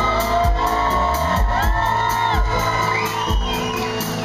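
Live band with acoustic guitars, banjo and drums playing an instrumental passage between sung lines, with audience members whooping and shouting over the music in a large hall.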